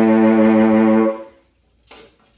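Saxophone holding one steady note, rich in overtones, that stops a little over a second in; a short click near the end.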